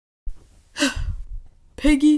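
A person sighing: a breathy exhale about a second in that falls in pitch, then a short spoken sound near the end as speech begins.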